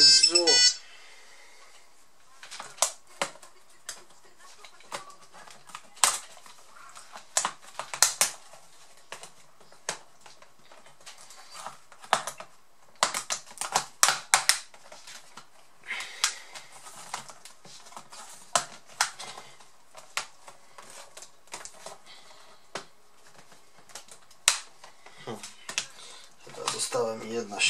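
Lenovo G570 laptop keyboard being pried loose with a plastic pry tool: irregular sharp plastic clicks and snaps as the retaining latches release and the keyboard and its keys knock and rattle, some in quick clusters.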